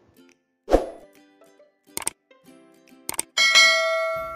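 Subscribe-button animation sound effects: a soft pop about a second in, quick mouse clicks near two seconds and again just after three, then a bell ding that rings on and fades.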